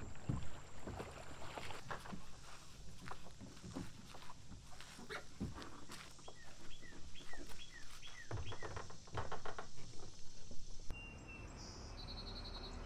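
Knocks, scrapes and clatter of kayaks and paddles being handled, first at the shore and then while being lifted onto a car's roof rack. In the middle a bird repeats a short falling call about three times a second. Near the end the sound changes to a steady insect trill.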